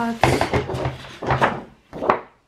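A sheet of patterned paper being handled and slid into place on a plastic rotary paper trimmer, with knocks of the trimmer on the table and rustling of the paper. A woman's voice is heard too.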